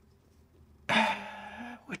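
A man's brief breathy vocal noise, like a throat clearing or an exhaled 'hah', starting suddenly about a second in after near silence.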